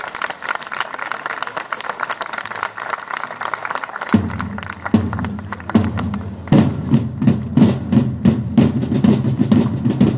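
Marching drums accompanying a flag-waving display: a rapid rattle of snare-type drum strokes, with deep bass-drum beats coming in about four seconds in and settling into a steady beat of about two and a half strokes a second.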